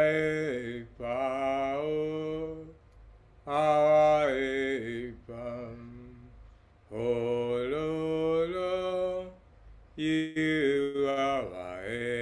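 A man singing a slow, chant-like worship song solo, in about four long phrases of held notes with short pauses between them.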